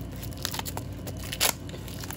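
Clear plastic shrink wrap crackling and tearing as it is pulled off a trading-card booster box, in scattered crinkles with one sharper crackle about one and a half seconds in.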